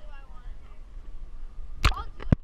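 Water splashing and gurgling over the microphone as an action camera is plunged under the river surface, a sudden loud burst near the end. Faint voices sit under it before that.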